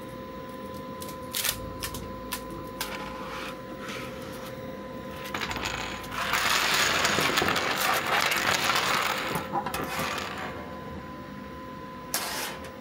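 Scattered clicks as a printer's flexible build plate is handled, then a dense clatter of dozens of small 3D-printed plastic models pouring off the plate onto a table, from about six to ten seconds in. A faint steady whine runs underneath until near the end.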